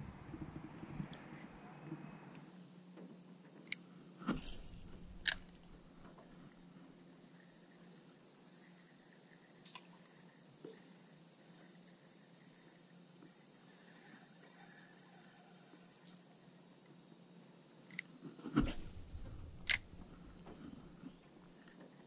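Quiet outdoor ambience with a few short clicks and knocks, in two small clusters: one about four to five seconds in and another near the end.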